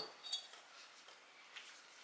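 Faint clink of small metal coffee spoons in a white ceramic pitcher as it is set down on the counter, about a third of a second in; otherwise quiet room tone.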